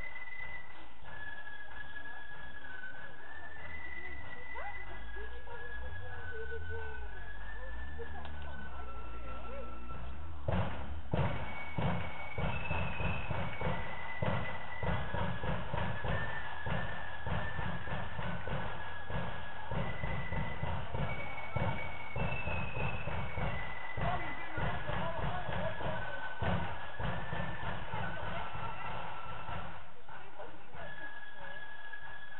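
Marching flute band playing a melody on flutes, with drums coming in about ten seconds in and beating a steady march rhythm under the tune.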